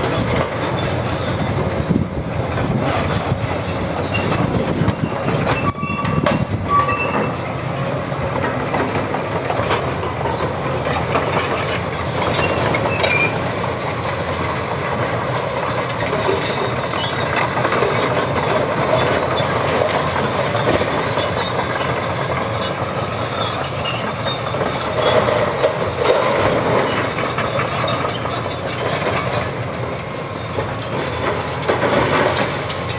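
Cat 329E hydraulic excavator working demolition: its diesel engine running steadily under load while the bucket tears into a concrete-block wall, with continual crunching and clattering of breaking block and rubble and a few short, high squeals.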